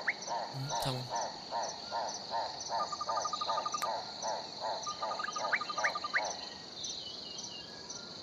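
Outdoor nature ambience of frogs croaking in a regular rhythm, about two or three croaks a second, stopping about six seconds in, over a steady high insect trill with a fast ticking above it. A few short rising chirps come near the start and again about five and a half seconds in.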